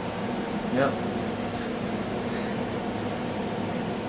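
Blower door fan running steadily with a low hum, depressurizing the house so that outside air is drawn in through leaks in the building envelope.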